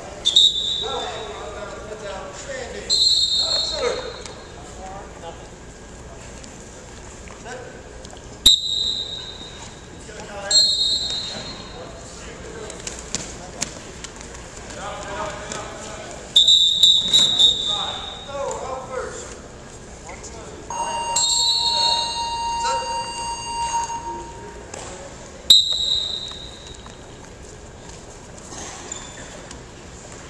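Referee's whistle blowing short, shrill, trilling blasts, about seven of them spread through the bout, with shouting voices between them.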